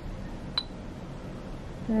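A single short, sharp click with a brief high-pitched ping about half a second in, over a steady low room hum.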